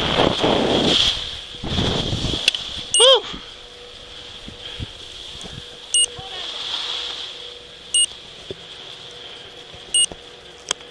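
Skis sliding over packed snow, with wind on the microphone, for about two seconds as the skier slows to a stop. Then a short sound with an arching pitch, followed by short electronic beeps about every two seconds from the head-mounted action camera.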